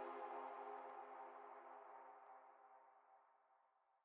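Music: the last held chord of a track fades away over about two seconds, then silence.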